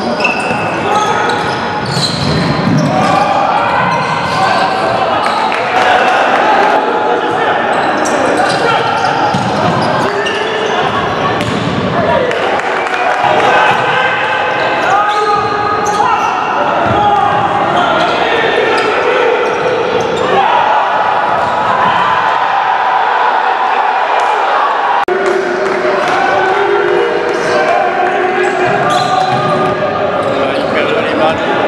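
Indoor futsal match in a reverberant sports hall: players and spectators shouting and calling almost continuously, with the ball knocking off feet and the wooden floor now and then.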